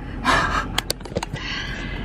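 A woman puffing out two breaths in the heat of a hot car, with a few small clicks between them.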